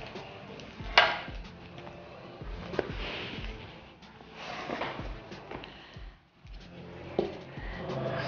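Handling sounds as a cake board is placed on a fondant-covered cake and the cake is flipped over: a sharp knock about a second in, then soft rubbing and a few light taps. Quiet background music with a steady low beat plays underneath.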